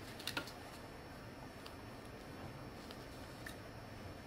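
Faint room tone with small clicks and knocks of objects being handled on a floor: a quick cluster of clicks near the start, then a few scattered single ticks.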